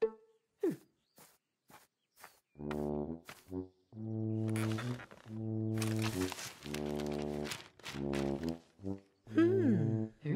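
A slow brass tune in long held, trombone-like notes with short breaks, starting about two and a half seconds in after a few light taps about half a second apart. A papery rustle of a newspaper sits over the middle, and high puppet-voice giggles come near the end.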